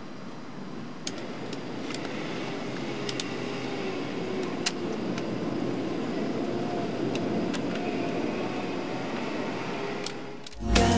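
Steady background noise, slowly growing a little louder, with a few faint sharp clicks scattered through it.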